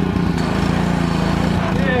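Small gasoline engine of a pressure washer running steadily at a constant pitch, driving a foam cannon.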